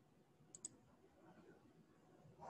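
Near silence, broken by two quick, sharp clicks a split second apart about half a second in.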